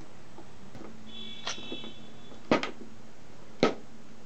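Clicks and knocks of angle-grinder parts and a screwdriver handled on a workbench during disassembly. A brief high metallic ring sounds around a light click about a second and a half in, then come a louder double knock about halfway and a single sharp knock near the end.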